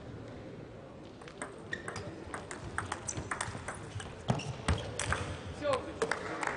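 Table tennis rally: the celluloid ball clicks sharply off the rackets and the table, a few strikes a second, starting about a second and a half in and running until near the end.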